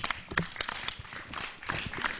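Scattered, irregular clapping from an audience: sparse individual handclaps rather than full applause.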